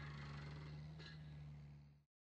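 Faint steady low hum with a light background hiss, fading out near the end.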